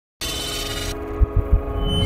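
Logo-reveal intro music: a sustained synth chord with a bright hiss that drops away just under a second in, followed by three short low thuds and a swelling low rumble.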